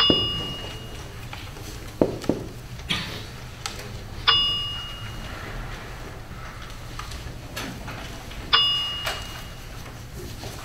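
Three short, clear metallic dings about four seconds apart, each struck sharply and fading away within about a second. Between them, a few soft knocks and rustles over a low room hum.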